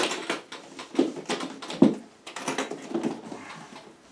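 A hard guitar case being opened: a string of small clicks and knocks from its latches and lid, with one sharper knock a little before the middle.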